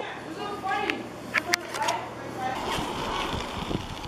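Bicycle being handled and set rolling: a few sharp clicks and knocks from the bike about one and a half seconds in, then an even rushing noise as it gets moving, under faint voices.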